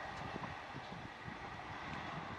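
Class 375 electric multiple-unit train running along the line at a distance: a faint, steady low rumble.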